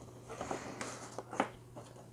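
Sheet of paper rustling and lightly tapping as it is handled and pressed into the slots of a cardboard frame, with one sharper tick about one and a half seconds in.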